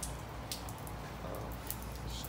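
Faint handling noise, a few small clicks and rustles, as a hand-held phone camera is moved, over a steady low background hum.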